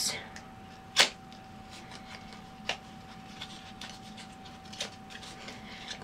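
A few sharp clicks and light taps from handling and opening a lipstick and its packaging, the loudest about a second in.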